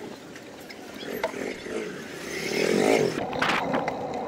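Street traffic heard from a moving bicycle, with a motor vehicle passing close and loudest about two to three seconds in.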